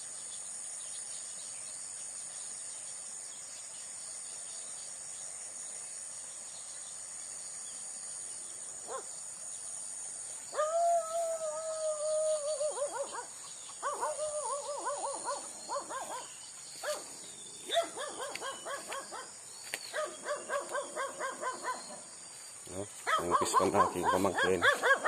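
A steady, high chirring of insects runs throughout. About ten seconds in, an animal starts calling: first one long held cry, then several runs of quick, repeated short cries, getting louder near the end.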